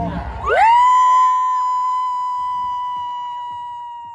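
A single held tone that slides up in pitch about half a second in, then holds steady while slowly fading, and slides down again near the end.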